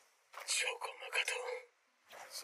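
Speech only: a short line of anime dialogue spoken in Japanese, played back from the episode.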